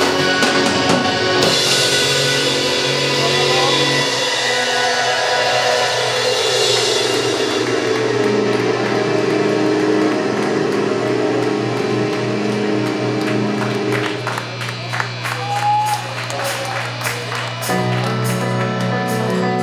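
Live rock band playing, with electric guitars and a drum kit amplified in a small room. The music thins into a quieter, sparser passage about fourteen seconds in.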